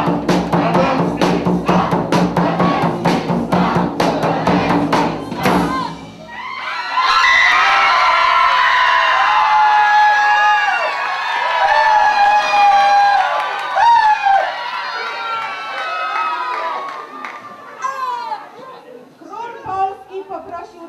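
Fast, loud live drumming on a drum kit and percussion, about four beats a second, stopping abruptly about six seconds in. Then a crowd of children's voices shouting together for about ten seconds, fading out near the end.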